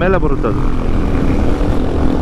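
Royal Enfield Himalayan 450's single-cylinder engine running steadily at highway cruising speed, with wind noise over the microphone.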